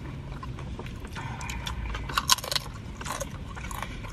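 Close-up eating sounds: irregular crunching and chewing of corn chips in a few short crackly bursts, over a low steady hum.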